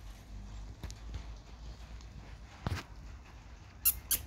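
A few sharp knocks and clinks from a wire ferret cage and its metal food bowl as a ferret feeds, the loudest pair right at the end, over a steady low rumble.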